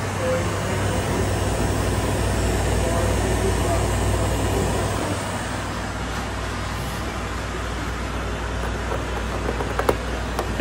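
Refrigeration condensing unit running: a steady hum from the hermetic compressor under the whir of the condenser fan. It gets slightly quieter about five seconds in.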